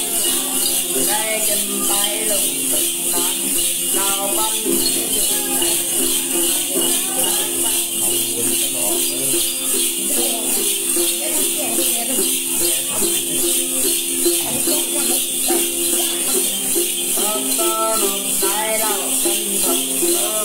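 Tày Then ritual music: a đàn tính gourd lute played over a steady, rhythmic shaken rattle, with a voice coming in at a few points.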